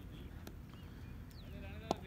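Faint distant voices of players calling across the field, then near the end one sharp crack of a cricket bat striking the ball.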